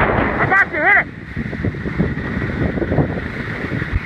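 Wind rushing over the microphone of a camera moving fast down a snow run. About half a second in, a person gives two short, high-pitched shouts.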